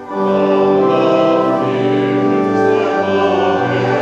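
Church organ accompanying a congregation singing a hymn, held chords moving from note to note, with a short break between phrases right at the start.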